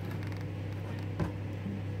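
A steady low hum with a single sharp tap on a plastic cutting board about a second in, as pieces of ginger are handled.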